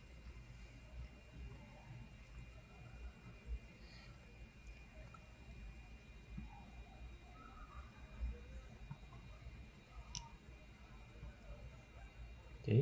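Faint steady electrical hum with a few soft, scattered clicks from the display's rotary encoder knob being turned.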